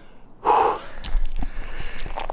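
A man's single heavy, breathy gasp about half a second in, the sound of being out of breath on a steep uphill hike. A few light clicks and rustles follow.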